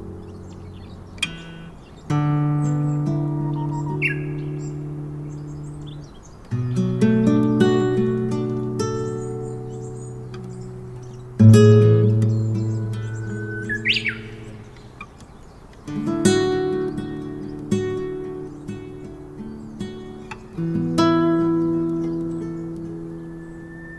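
Classical guitar playing five slow chords, each struck and left to ring out, with a Japanese bush warbler (uguisu) singing over it. The bird gives a short whistle early on and, about two-thirds of the way through, a clear whistled phrase that sweeps up and back down.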